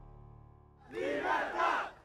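Background music fades out; then, about a second in, a man shouts into a handheld microphone in two loud bursts.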